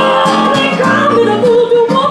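Live acoustic blues: a woman singing long held notes that bend in pitch, over a strummed acoustic guitar.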